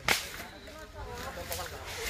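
A single sharp crack a moment after the start, then faint distant shouting voices.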